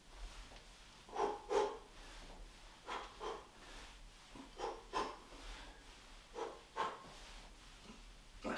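A man's short, sharp exhales in pairs, one with each punch of a one-two combination: four pairs, each pair repeating about every second and a half to two seconds.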